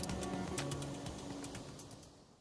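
Background music with percussion and held tones, fading out steadily as the track ends.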